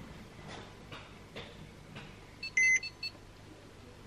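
Porsche 911 Carrera S instrument cluster giving a short electronic warning chime about two and a half seconds in, with the ignition on. It sounds as the dash reports a string of faults, among them an airbag fault. A few faint clicks come before it.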